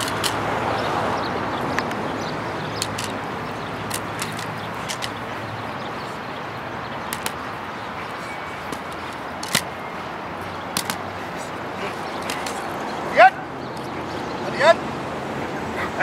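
Dog working a decoy in bite training: scuffling with scattered sharp clicks and slaps, then near the end two loud barks about a second and a half apart.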